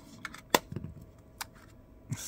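Short plastic clicks and taps from the shiny black plastic charging case of a wireless lavalier mic set, handled while prying a transmitter out of its slot. One sharp click comes about half a second in, with a few lighter ticks around it and another near the middle.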